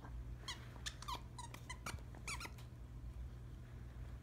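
Squeaker in a plush duck dog toy squeaked repeatedly as a dog chews it: a quick series of short, high squeaks in a few clusters over about two seconds.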